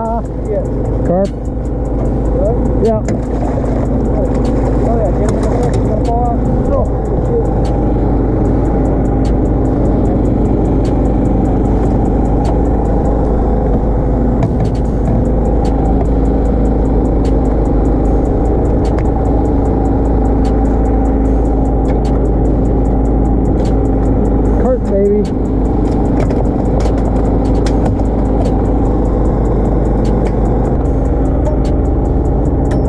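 Steady drone of an engine aboard a bowfishing boat, running evenly without a break. A few short, wavering pitched sounds come over it near the start and again late on.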